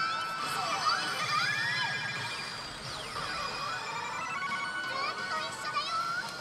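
Pachislot machine playing its electronic music and effect sounds during a reel-spin presentation: sweeping, rising and falling synth tones and chime-like jingles layered over one another.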